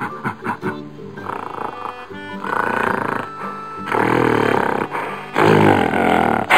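Gorilla roaring: a series of rough, loud calls that grow louder, the loudest near the end, over light background music.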